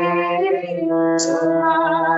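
A woman singing a devotional song in long held notes, one word sung about a second in, over a steady low drone from the accompaniment.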